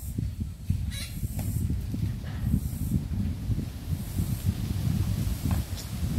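Wind buffeting the microphone: an uneven, gusty low rumble, with a couple of brief crackles from banana leaves being handled.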